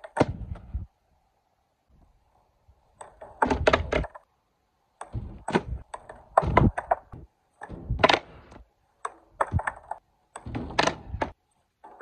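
Skateboard deck and wheels repeatedly slapping and clattering on concrete and a ledge box during trick attempts: bursts of sharp clacks and knocks every second or two, with short quiet gaps between.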